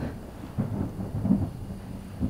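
Thunder rumbling low and uneven, swelling a few times.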